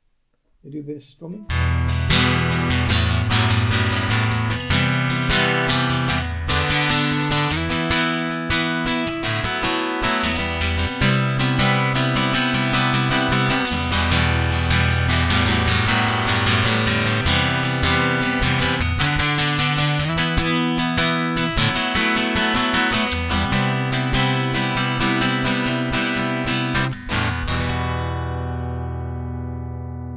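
Tanglewood TW55 acoustic guitar with a piezo pickup, played through a Vox AGA150 acoustic amplifier. A continuous passage of chords over sustained bass notes starts about a second and a half in. The last chord rings out and fades near the end.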